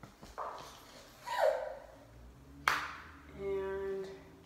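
A toddler vocalizing in high-pitched wordless sounds: a short falling squeal, then a held 'aah' near the end. A single sharp tap comes just before the held sound.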